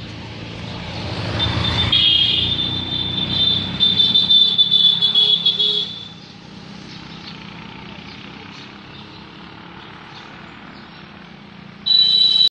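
A motor vehicle passing close by, its rumble swelling about a second in. A loud, high, steady tone sounds over it until about six seconds in and then cuts off suddenly, leaving a quieter outdoor background.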